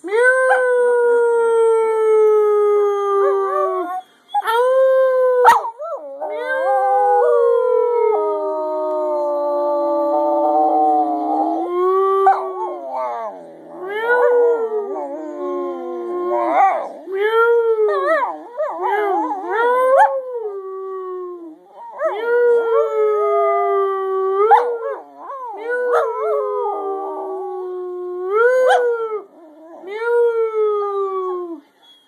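Small shaggy terrier-type dog howling, a long run of drawn-out howls. Several last a few seconds each and slowly sag in pitch, with a stretch of shorter howls that rise and fall in the middle.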